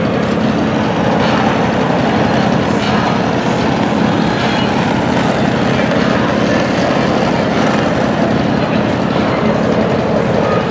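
Steady city street noise, mostly traffic driving past, with an even low hum under it.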